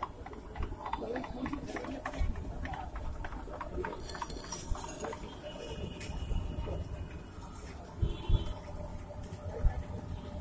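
Street food stall ambience: background voices with scattered clinks and knocks of metal utensils and dishes, and a few short high ringing tones about four seconds in.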